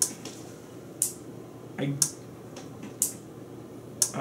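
Relay board driven by an Arduino clicking as its relays switch on and off together, a sharp click about once a second.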